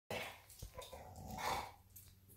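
Pit bull-type dog making faint short vocal sounds, the loudest about one and a half seconds in.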